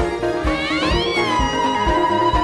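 Instrumental praise-band music with a steady drum beat, about two beats a second. About half a second in, a high note glides up and falls back, then holds steady.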